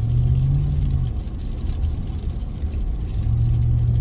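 Car interior driving noise: a low steady engine hum over road rumble, heard from inside the cabin. The hum drops away about a second in and comes back near the end.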